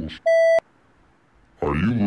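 A censor bleep: one short steady electronic tone, about a third of a second long, masking a swear word and cutting off abruptly with a click.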